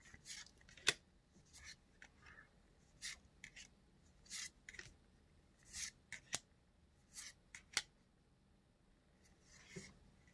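Faint swishes and light snaps of trading cards sliding against one another as they are flipped one by one through a hand-held stack, at an irregular pace of roughly one card a second.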